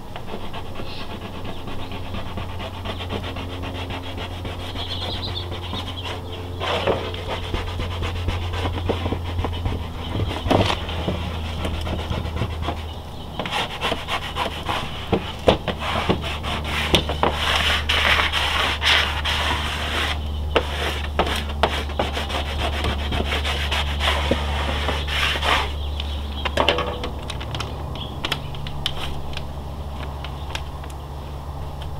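A squeegee rubbing and scraping over a vinyl decal on a camper trailer's side wall in repeated strokes, pressing down vinyl that lifted when the transfer tape was peeled before the wet-applied decal had dried. A steady low hum runs underneath.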